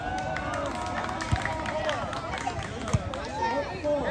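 Chatter of a crowd of spectators and players outdoors: several voices overlapping and calling out. Two short thumps about a second and three seconds in.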